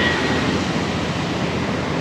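Steady noise of road traffic passing close by, cars and motorbikes running along the road with no single vehicle standing out.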